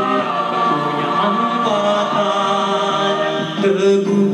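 Mixed choir singing held chords, with a male soloist singing at the microphone in front.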